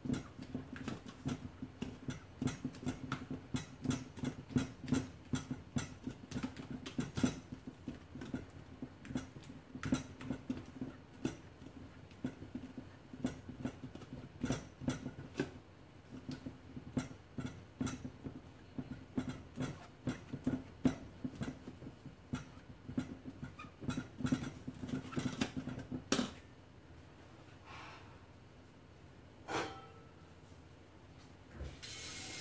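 Silicone spatula stirring and scraping batter in a stainless steel mixing bowl, a quick irregular run of scrapes and light taps against the metal that stops a few seconds before the end.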